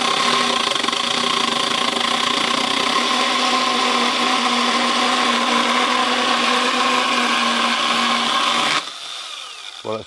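Husqvarna Aspire battery mini chainsaw running flat out while cutting through a 3-by-3-inch piece of softwood, a steady motor-and-chain whine. It stops suddenly near the end as the cut finishes.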